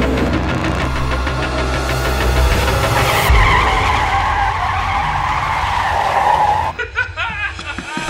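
A car skidding with its tyres squealing, a wavering screech that runs for several seconds with a low thump about three seconds in, then cuts off suddenly near the end.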